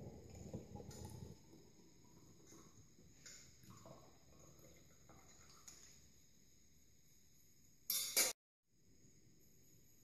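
Liquid pouring from a stainless steel saucepan into a glass jar for about the first second, then faint clinks of metal against the pan and jar. Near the end a short loud burst of noise cuts off abruptly into dead silence.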